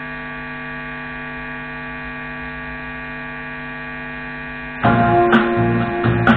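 Steady electrical mains hum from a live amplifier and speaker rig, heard in a pause between songs. About five seconds in, loud music with electric guitar and drums cuts in suddenly.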